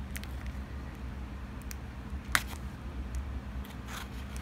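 Small scissors snipping through the foil-laminate wall of a Capri Sun juice pouch: a few faint crinkles and clicks, with one sharp snip a little past halfway.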